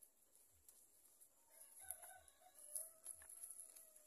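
A rooster crowing faintly: one long call that starts about a second and a half in and is held for over two seconds.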